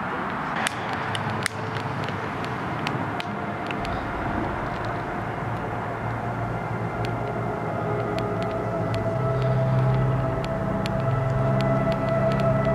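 A low, steady droning hum of several held tones over a rushing background, swelling louder toward the end, with scattered sharp clicks.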